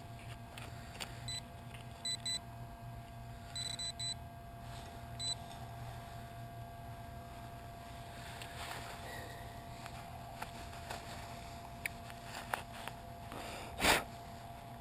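Metal detector pinpointer beeping in short bursts, singly and in quick pairs and clusters, over a buried metal target during the first five seconds. Then rustling and light clicks of digging through mulch, with one sharp knock near the end.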